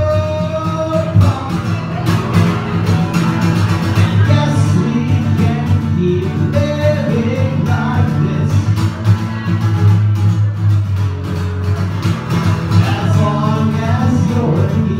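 A male singer with a strummed acoustic guitar, performing a song live.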